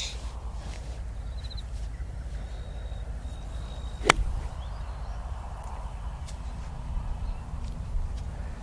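A single crisp click of a golf iron striking a ball on a slow half swing, about four seconds in, over a steady low background rumble.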